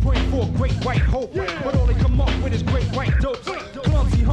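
Hip hop track with a rapper's verse over a heavy bass beat, played on an FM pirate radio broadcast recorded off-air to tape.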